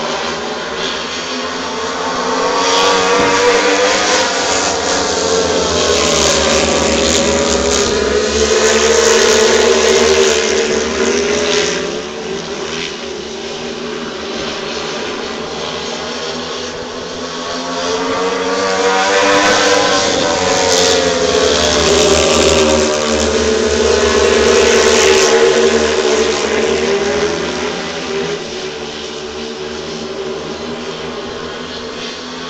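A pack of speedway bikes' single-cylinder methanol-fuelled engines racing round the track, the engine note rising and falling as the riders go through the bends. The sound swells twice as the pack comes round towards the near side and eases between.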